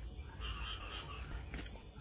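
Faint night chorus of frogs and insects calling, over a low steady hum.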